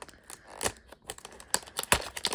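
Cellophane shrink-wrap on a cardboard box of trading-card packs crinkling and tearing as it is peeled off by hand, in irregular crackles with a sharper snap near the end.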